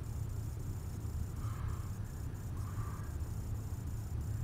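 Steady room tone in a small theater: a constant low hum with a thin, faint high-pitched whine above it, and a couple of very faint soft murmurs.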